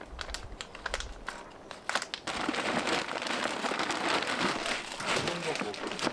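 Plastic bag of potting soil crinkling and rustling as it is handled, then soil pouring out of the bag into a plastic planter box as a steady hiss from about two seconds in.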